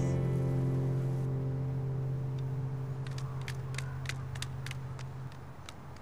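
The last strummed guitar chord of the soundtrack music ringing out and slowly fading, its low note held until about five seconds in. Faint short ticks come about three a second from about three seconds in.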